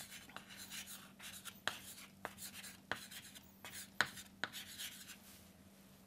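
Chalk writing on a chalkboard: a string of short, irregular scratches and taps as letters are written.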